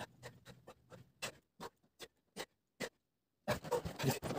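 A man doing a quick set of push-ups on a carpeted floor: about ten short sharp sounds, one after another, spaced further apart as the set goes on, then a brief pause and a louder cluster of movement sounds near the end as he gets up.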